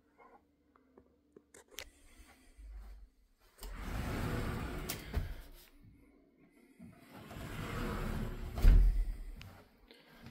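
Interior doors being opened: two swells of rustling, swishing noise, the second ending in a loud thump near the end.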